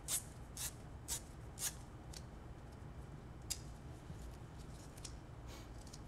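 A roll of white adhesive medical tape being pulled off in short jerks, about twice a second for the first two seconds, then one sharp tear about three and a half seconds in, with fainter rustles after.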